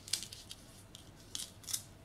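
Faint small clicks and rustles as a cord necklace with metal beads, pearls and a short metal chain is laid down and arranged on a tabletop, about three separate clicks.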